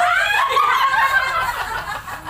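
Women laughing loudly, a high-pitched squeal of laughter that sets in at once and eases off near the end.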